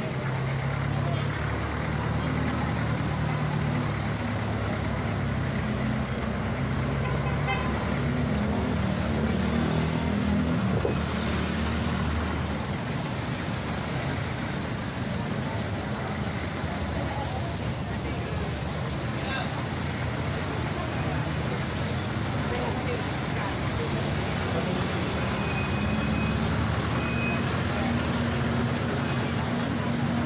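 Busy street traffic: motorcycles, cars and jeepneys running and passing close by, with a low engine drone that is strongest in the first dozen seconds and comes back near the end.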